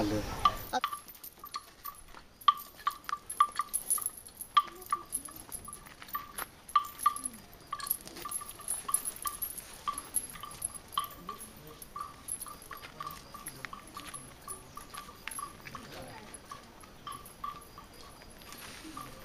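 A bell hung on a walking elephant clanking irregularly, each stroke at the same ringing pitch, with scattered sharp clicks alongside.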